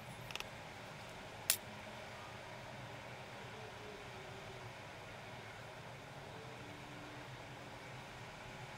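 Steady background hiss with a few faint ticks just after the start and one sharp click about a second and a half in, as metal tweezer tips handle small adhesive pads against the camera body.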